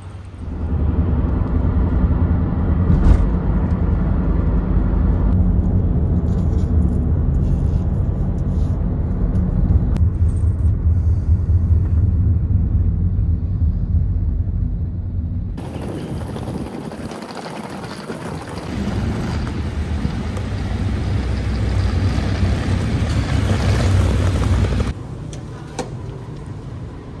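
Steady low rumble of a road vehicle in motion, heard from inside, for about the first fifteen seconds. It cuts off suddenly and gives way to a rougher, hissing noise with a rumble underneath, which drops away just before the end.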